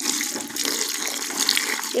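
Water pouring steadily from a plastic jug into a bucket of dry wall putty powder.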